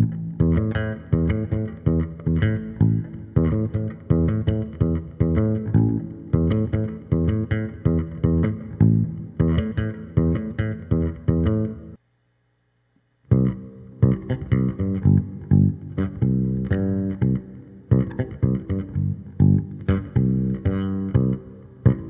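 Electric bass played solo with fingers: a syncopated root-and-fifth line in sixteenth-note rhythm, notes cut short between plucks. About twelve seconds in, it stops for just over a second, then a second syncopated root-and-fifth line in C begins.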